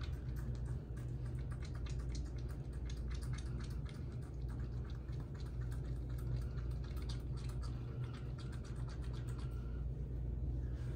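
Wet squishing and clicking of ear-cleaning solution in a dog's ear canal as the base of the ear is massaged: a rapid, irregular run of small squelches.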